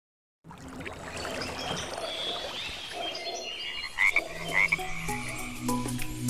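Frogs calling in a chorus of repeated chirps, with two louder calls about four seconds in; music comes in near the end.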